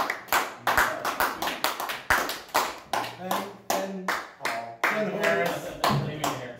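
Hand clapping after a performance, separate sharp claps at about three a second. Voices talk over the claps from about halfway through.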